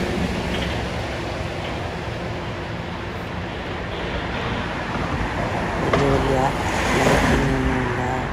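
City street noise: a steady rush of road traffic, with a person talking briefly near the end.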